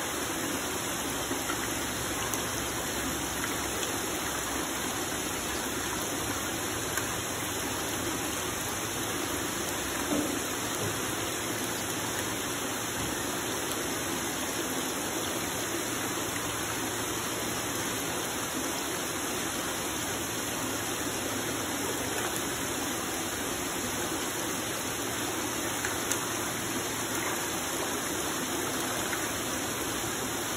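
Steady rush and patter of water in grouper fingerling nursery tanks: water running through the circulation pipes and splashing on the agitated tank surfaces.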